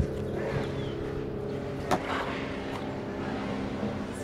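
An engine hum running steadily at an even pitch, with a single sharp click about two seconds in.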